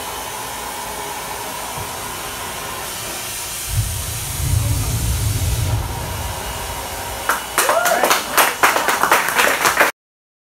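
A steady hiss, then nearly four seconds in a low rumble lasting about two seconds: a Sierra Nevada Vortex hydrogen–liquid-oxygen rocket engine test-firing, heard from inside the control room. Clapping and cheering break out near the end.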